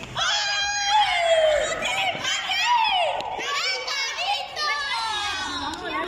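Children's high-pitched voices calling out and squealing over one another during play, their pitch sliding up and down.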